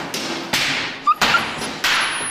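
Water-powered trip hammer striking hot iron: three heavy blows, roughly two-thirds of a second apart, each dying away briefly.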